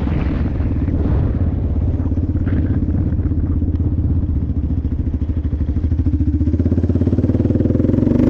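The Yamaha Raptor 700R ATV's single-cylinder four-stroke engine runs at low revs with a slow, lumpy beat, then the revs climb toward the end as it pulls away.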